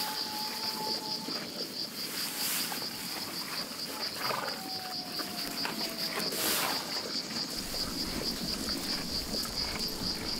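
Insects chirring in a steady, fast-pulsing high trill, with a faint drawn-out falling tone twice and a few brief noisy swishes.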